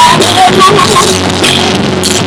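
Loud live gospel praise-break music from a drum kit with cymbals and a keyboard, dense with drum and cymbal strikes.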